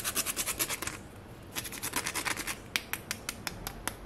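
A whole nutmeg being grated in quick scraping strokes, about eight a second. The scraping pauses about a second in, resumes, then thins to a few separate scrapes near the end.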